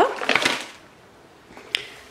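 Brief crinkle of thin plastic produce bags and a plastic punnet being handled, then a quiet stretch with a single click near the end.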